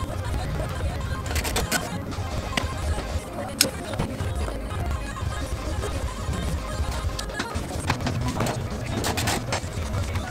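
Background music under the footage, with a few sharp clicks and knocks from work on the car's interior about a second and a half in, near three and a half seconds, and around nine seconds.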